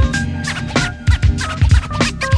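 Hip-hop beat with turntable scratching: a looped riff over heavy kick drums, cut through by quick scratched record sweeps sliding up and down in pitch.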